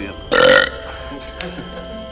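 One loud, short burp a little way in, over steady background music.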